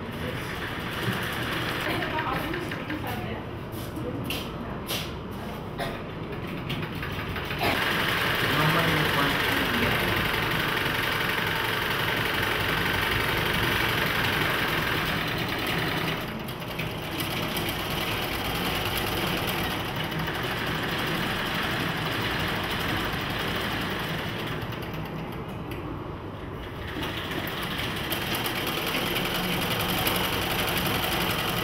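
Black handwheel sewing machines running and stitching cloth: a steady mechanical clatter of the needle and drive that grows louder about a quarter of the way in. Voices can be heard in the room.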